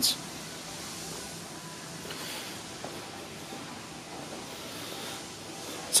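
Steady background hiss of room noise, with no distinct event standing out.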